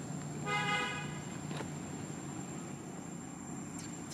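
A single short vehicle horn toot, steady in pitch and about half a second long, about half a second in, over a steady low background hum.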